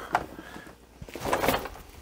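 Handling noise from a heavy-duty plastic storage tote: a click just as the lid comes off, then a rustling scrape about a second later as it is moved aside.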